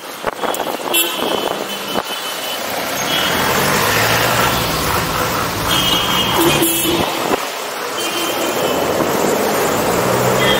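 City road traffic: cars and trucks moving past, heard from a moving bicycle, growing louder from about three seconds in. Short high horn toots come a few times.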